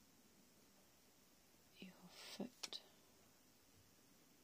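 A woman's soft whisper, brief and about two seconds in, followed by two sharp clicks; otherwise near silence.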